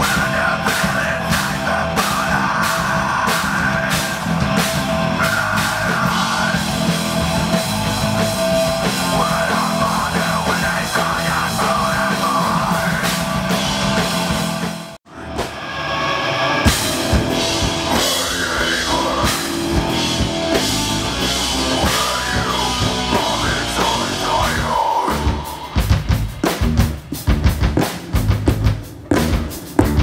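Live heavy mathcore band playing loud: electric guitar, bass guitar and drum kit together. The sound drops out for a moment about halfway through, and near the end the music breaks into choppy stop-start hits with short gaps between them.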